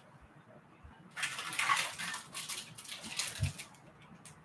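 Rummaging and crackly rustling of plastic packaging as a packaged fishing lure is picked out, starting about a second in and lasting about two seconds, with a dull thump near the end.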